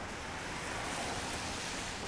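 Car tyres hissing on a wet road as traffic passes, the hiss swelling about a second in.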